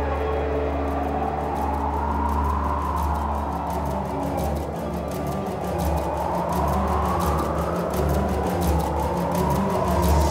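Eerie background score: a steady low drone under a high tone that slowly rises and falls twice.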